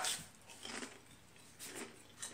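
Faint chewing and crunching of a chip, in two short bursts.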